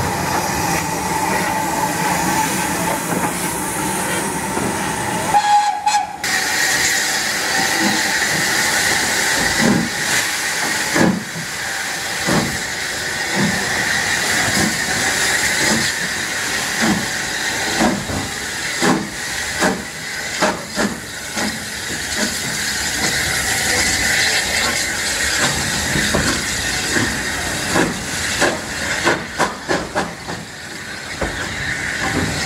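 Steam train pulling out of a station: a steady hiss of steam throughout, with a high whistle-like tone for the first six seconds or so that cuts off suddenly. From about nine seconds in, regular beats come about one a second and quicken toward the end as the train gathers speed.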